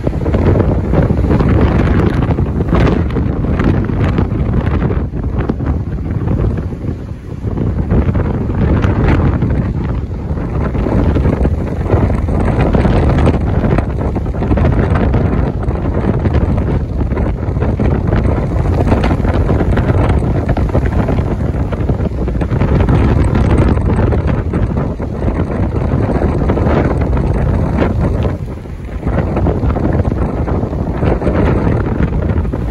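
Strong wind buffeting the microphone, over heavy storm surf breaking against a sea wall. The rush dips briefly about a quarter of the way in and again near the end.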